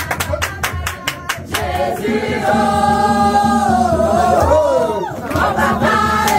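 A group of women singing together with rhythmic hand-clapping at about four claps a second; the clapping stops about a second and a half in and the voices hold long sung notes that bend down in pitch.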